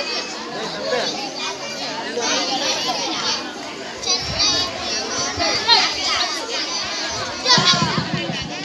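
A group of young girls chattering and calling out over one another, their high-pitched voices overlapping. One voice comes through louder near the end.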